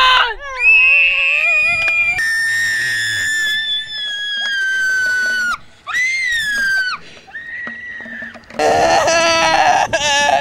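A boy screaming in pain in a series of long, high-pitched, wavering cries that rise and fall in pitch, with short breaks between them. The last cry, near the end, is the loudest.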